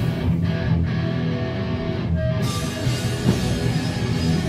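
A live rock band playing loud, with electric guitar leading. The sound brightens sharply about halfway through as more of the band comes in.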